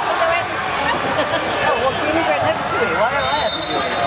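A basketball bouncing on a hardwood gym floor during play, amid the voices of players and spectators calling out in a large echoing hall. A brief high tone sounds near the end.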